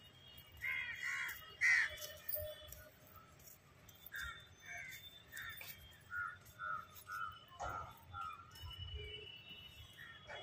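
A bird calling over and over: a few loud calls in the first two seconds, then a steady run of shorter calls about two a second.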